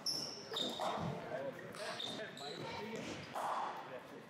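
Cricket balls bouncing and knocking off bats in the indoor nets: a few sharp knocks, with short high squeaks and voices echoing in a large hall.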